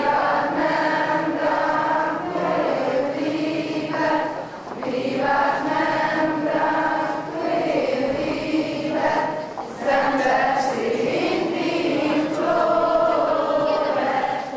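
A choir singing in long, held phrases, with short breaks between phrases, in a live recording.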